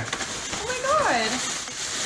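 Tissue paper and a paper gift bag rustling as a small boxed present is pulled out, with a quiet voice heard briefly partway through.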